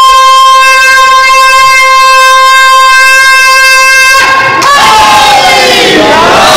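A loud, steady, piercing tone with many overtones, held at one unchanging pitch for about four seconds and then cutting off, after which crowd voices are heard.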